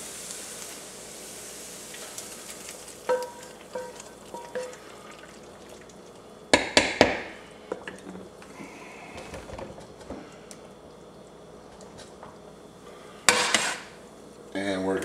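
Metal spoon scraping and knocking against pots while the sautéed vegetable-and-flour roux is transferred into the pot of beans, over a faint sizzle. A few ringing clinks come about three seconds in, sharper knocks around seven seconds, and a loud knock near the end.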